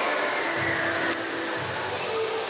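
Fountain water jets spraying with a steady rushing hiss, with high children's voices faintly over it in the first second.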